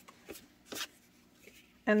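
Cardstock journaling cards being handled and slid against one another: a few brief papery rustles, the clearest just under a second in.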